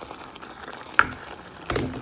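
Prawn curry simmering and sizzling in a pan while a metal ladle stirs it, with a sharp clink of the ladle against the pan about a second in and more scraping and knocks near the end.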